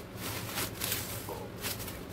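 Bubble wrap and plastic packaging crinkling and rustling as a wrapped mini fan is handled, in a few short crinkles.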